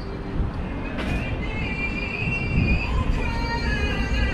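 Outdoor street noise with a steady low rumble, with music playing over it.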